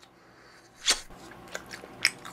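Close-up eating sounds: one sharp mouth smack or bite about a second in, then faint chewing.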